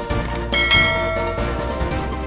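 Background music with a bright bell chime sound effect about half a second in that rings out and fades, matching a subscribe-and-notification-bell animation.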